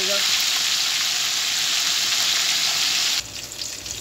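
Marinated chicken leg deep-frying in hot oil: a loud, steady sizzle that drops abruptly about three seconds in to a quieter frying with scattered crackles.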